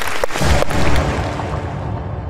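Transition sound effect for an animated logo sting: a noisy swoosh with a deep low rumble that swells about half a second in, its high end fading out toward the end.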